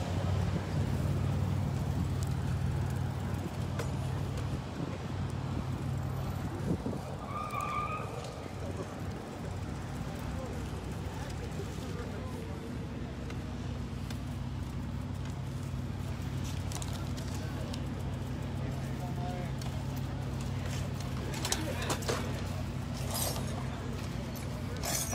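A steady low hum of outdoor street background, with sharp crunches of broken glass underfoot near the end.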